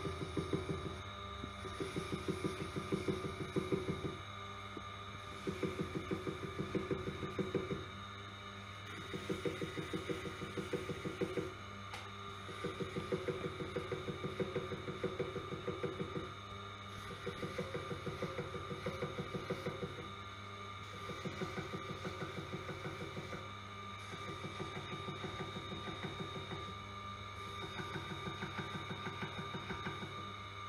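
Tormek sharpener humming steadily while a serrated knife edge is drawn across its spinning felt wheel in repeated passes. Each pass is two to three seconds of rapid ticking chatter as the serrations run over the felt, with short pauses between passes: the burr is being taken off inside the serrations.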